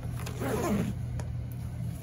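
A nylon tactical backpack being handled and shifted, giving one short rasping scrape that falls in pitch about half a second in, with a few light clicks, over a steady low hum.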